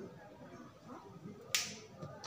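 A single sharp snip of hand wire-cutting pliers closing through an electrical wire about three-quarters of the way in, with faint handling of the wires around it.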